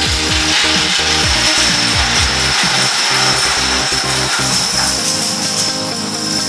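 Background music over the dense, rushing clatter of many plastic dominoes toppling in a chain reaction, which eases off about five seconds in.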